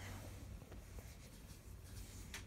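Quiet room tone: a low steady hum with faint scratchy rubbing and a few light clicks, like a handheld camera being moved.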